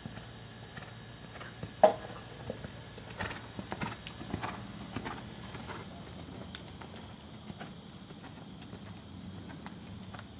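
Hoofbeats of a ridden horse cantering on arena sand, with one sharp, loud knock about two seconds in.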